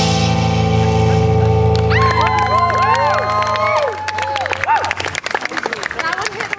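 The final chord of an amplified guitar song rings out and fades over the first few seconds. About two seconds in, audience clapping and whooping cheers start and carry on to the end.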